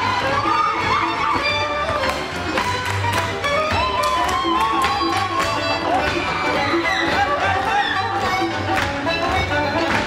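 Hungarian folk dance music led by fiddle, with many sharp taps from the dancers' boots and heels striking the stage floor in time with the tune.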